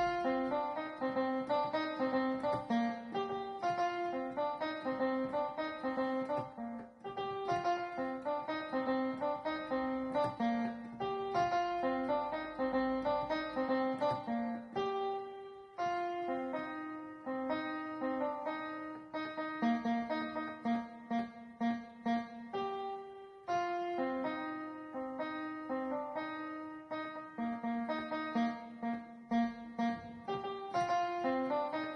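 Electronic keyboard playing a quick melody in B-flat major at the song's own speed, one note after another, with brief breaks about 7, 15 and 23 seconds in.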